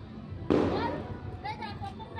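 A single loud firework bang about half a second in, its echo dying away quickly.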